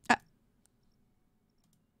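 A single short click right at the start, then near silence with one faint tick about half a second later.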